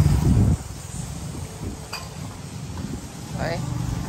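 A machine's steady low hum cuts off sharply about half a second in, leaving quieter scrubbing and handling sounds; a voice speaks briefly near the end.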